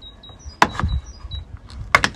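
Plastic door trim clips snapping as a trim piece is pried off a 2008 Mazda CX-9's rear door frame with a plastic trim removal tool: two sharp clicks, one a little over half a second in and one near the end.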